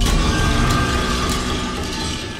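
Horror-trailer sound design: a sudden, loud, dissonant swell that cuts in abruptly. Many steady tones sound at once over a deep rumble and ease off slightly toward the end.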